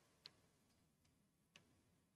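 Near silence: room tone with two faint clicks about a second and a half apart.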